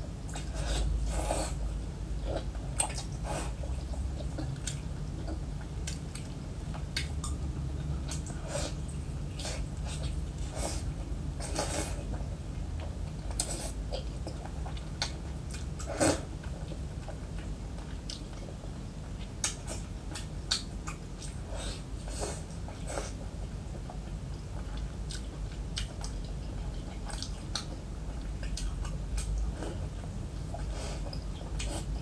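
Close-up chewing of braised pork belly: wet mouth smacks and clicks at irregular intervals, with one sharper smack about 16 seconds in. A steady low hum runs underneath.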